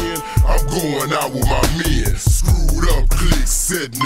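Chopped and screwed hip hop track: slowed-down rapping over a heavy bass beat.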